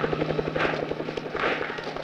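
Helicopter rotor chopping in a rapid, even beat, weakening near the end, with a soft hiss recurring a little more than once a second over a steady low hum, as on an old film soundtrack.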